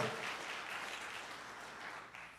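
Faint applause from a church congregation, dying away.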